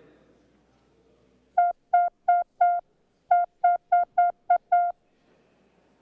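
A series of short electronic beeps from the chamber's voting system as the roll call opens: four beeps, a brief pause, then seven more, all at the same pitch.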